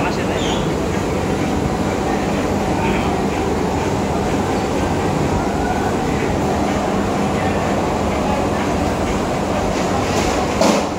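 Industrial garment washing and dyeing machine running, its large stainless-steel drum and electric motor making a steady, even mechanical rumble.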